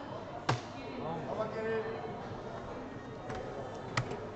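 A soft-tip dart hits an electronic dartboard with a single sharp knock about half a second in, with voices talking around it. Fainter clicks follow near the end.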